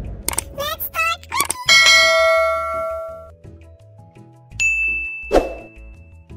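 Sound effects of an animated title card: a few quick rising chirps, then a bright ding about two seconds in that rings for over a second. Near the end come a swish and a thin, high, steady tone.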